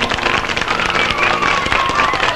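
Studio audience applauding at the end of a song, many hands clapping at once.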